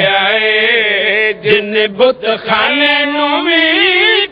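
A man's voice chanting verse in long, drawn-out melodic notes into a microphone, with a brief break about a second and a half in before another long held note.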